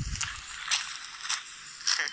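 Footsteps on gravel, about one step every 0.6 seconds, after a low thump at the start.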